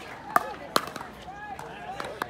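Pickleball paddles striking a hard plastic ball, sharp pops in a quick exchange, two of them less than half a second apart, with voices in the background.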